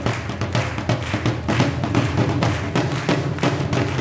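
Two dhols, Punjabi double-headed barrel drums, played with sticks in a fast, dense rhythm. The deep bass head rings low under sharp clicking strokes on the treble head.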